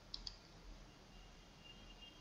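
Near silence, with a faint double click about a quarter second in: a computer mouse button pressed and released.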